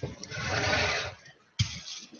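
Thin plastic bag crinkling as it is handled, with one sharp tap about one and a half seconds in.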